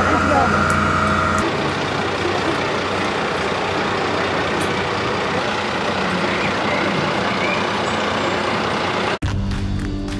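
Fire engine with an aerial platform running: a steady engine hum with a high whine, which stops about a second and a half in. An even rushing outdoor noise with faint voices follows, and music starts just before the end.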